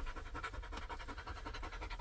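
Belgian Malinois dog panting in quick, even breaths, tired out.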